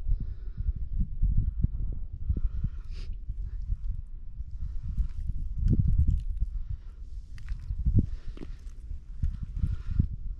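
Wind rumbling on the microphone, with irregular close knocks and crunches of slush and ice at the fishing hole as the boot and line shift.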